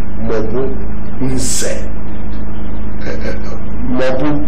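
A man's voice in short, separate calls picked up by a hand-held microphone, with a hiss-like sound about a second and a half in, over a steady electrical hum.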